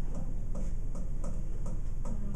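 Faint, fairly regular ticking, about three ticks a second, over a steady low room hum.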